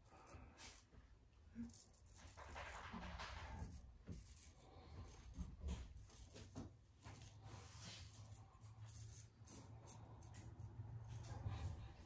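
Faint scraping of a Gillette Heritage double-edge safety razor cutting stubble through shave cream, in a series of short strokes.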